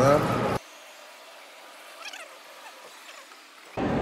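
People talking, cut off suddenly less than a second in. About three seconds of faint, thin background with distant voices follow, then talking starts again just before the end.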